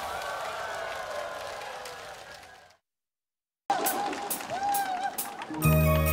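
The tail of a live concert's music and crowd noise fading out, then a second of silence at an edit. After it comes live outdoor concert sound with a voice and scattered claps, and near the end a band starts the steady intro of the next trot song.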